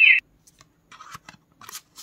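The talking flash card machine's speaker ends a short recorded dolphin whistle just after the start, cutting off suddenly. A flash card is then pulled out of the slot and another slid in, giving faint scrapes and light clicks.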